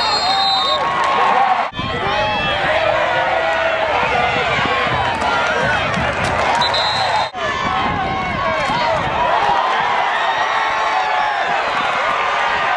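Football crowd in the stands cheering and shouting, many voices overlapping, with a short shrill whistle blast near the start and another about seven seconds in. The sound cuts out abruptly for an instant twice, a couple of seconds in and again about seven seconds in.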